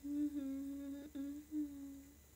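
A young woman humming with closed lips: a held low note on nearly one pitch for about two seconds, broken twice by short breaks near the middle.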